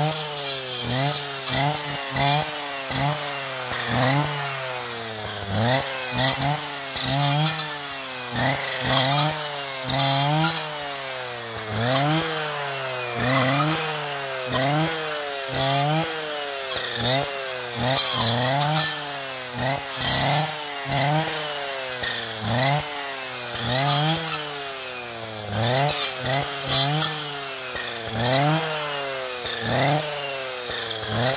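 Husqvarna 545RXT brushcutter's two-stroke engine driving a saw blade through brushwood stems, revved up and eased off over and over, its pitch rising and falling about once a second, with sharp clicks and snaps of wood as stems are cut.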